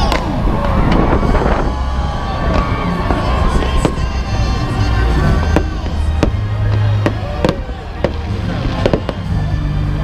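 Starting fireworks for a marathon wave going off overhead: a string of sharp bangs from about four seconds in, over crowd cheering and music.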